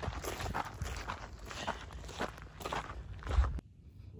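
Footsteps on a dry dirt trail through grass, about two steps a second, over a low rumble, with one louder knock near the end before the sound cuts off suddenly.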